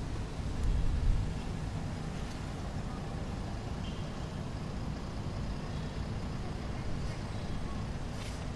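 Street ambience: a steady low rumble of road traffic, with a louder low surge about a second in.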